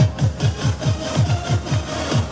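Recorded dance music played over the stage PA: a fast electronic kick-drum beat, each kick a short boom that drops in pitch, about four or five a second. It starts abruptly as the folk tune before it cuts off.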